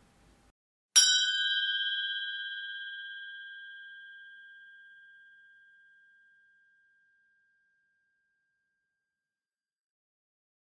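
A single bell-like chime struck once about a second in, ringing out with a clear tone and fading away over about five seconds.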